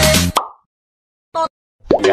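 Electronic dance music with a heavy bass beat that cuts off abruptly about half a second in. Dead silence follows, broken by one short, pitched pop-like sound effect shortly before the end.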